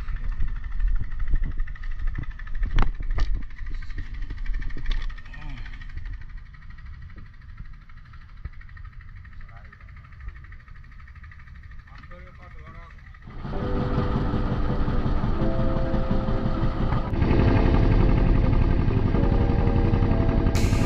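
Boat engine coming in suddenly about two-thirds of the way through and running steadily, stepping up louder a few seconds later as the boat gets under way. Before it, a few sharp knocks over a low rumble.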